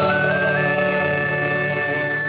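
Closing bars of a folk band's sea song: a small flute climbs in short steps to a high note and holds it over a sustained acoustic guitar and band chord.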